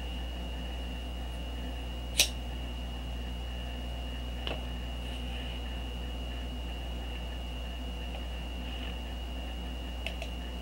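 Steady low hum with a thin, steady high whine, the background noise of a desk recording. A sharp click about two seconds in and a fainter click a couple of seconds later.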